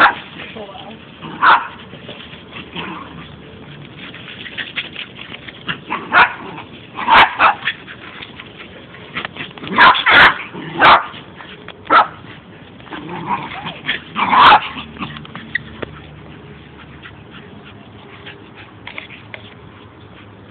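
Dog barking in short, separate barks, scattered through the first fifteen seconds, with a few coming close together around ten seconds in.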